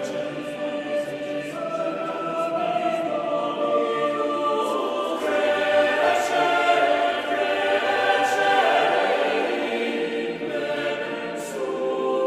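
Mixed choir singing a Latin sacred motet in several voice parts, the sound swelling louder about five seconds in.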